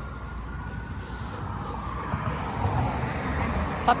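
Steady low background rumble with no distinct sounds standing out.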